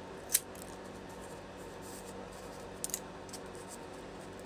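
Scissors snipping through the layers of a folded paper coffee filter: one sharp snip about a third of a second in, then a couple of faint clicks of the blades near the end, over a low steady hum.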